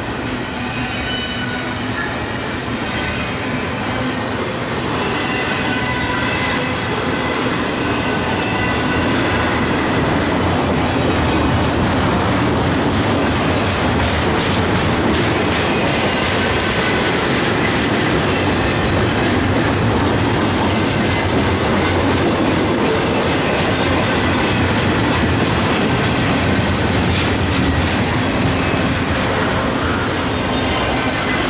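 Double-stack intermodal well cars rolling past close by: a steady loud rumble of steel wheels on rail, with clicking over rail joints and thin high wheel-squeal tones in the first part.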